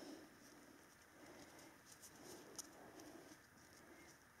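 Near silence: room tone with faint, soft low sounds coming and going about once a second and a few light ticks.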